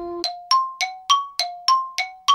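A bell-like ding sound effect: eight quick metallic strikes, about three a second, alternating between a lower and a higher note, each ringing briefly before the next.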